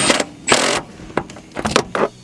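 Cordless driver run in two short bursts, spinning a 10 mm nut down onto a grounding stud, followed by a few sharp clicks of tool and wire handling.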